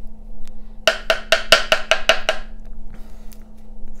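A paintbrush being rapped about ten times in quick succession, roughly seven knocks a second, each a hard tap with a short wooden ring. It is the brush being tapped to flick splatters of watery white watercolour paint.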